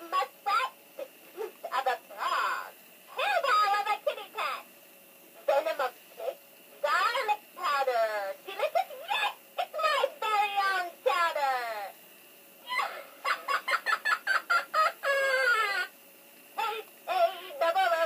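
Gemmy animated stirring-witch prop playing its recorded witch voice through its small built-in speaker: short talking and cackling phrases with gaps between them, tinny and hard to make out.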